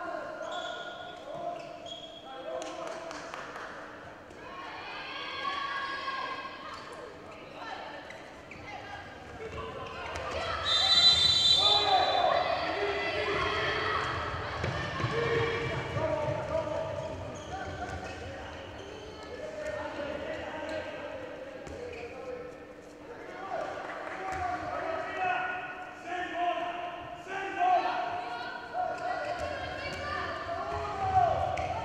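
Indoor handball game sound echoing in a large hall: a handball bouncing on the court and players and spectators shouting. About ten seconds in, a brief high-pitched tone comes with a swell of crowd noise that lasts several seconds.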